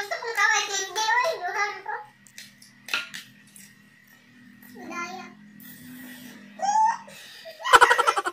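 Two women laughing and giggling in high voices for the first couple of seconds, then a quieter stretch with a low steady hum and a few light clicks, and a sudden loud burst of pulsing laughter near the end.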